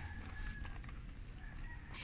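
Quiet pause with a low room rumble and a faint bird calling in the background, a thin high call near the start and again near the end.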